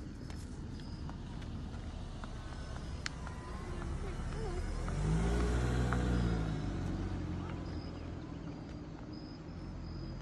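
A car drives slowly past, its engine and tyre noise swelling to a peak about five to six seconds in and then fading away. Insects chirp faintly in the background.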